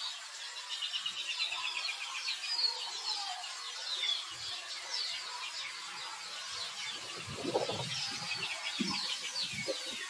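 Birds chirping and trilling, with a rapid trill in the first few seconds. Soft rustling thumps come in about seven seconds in.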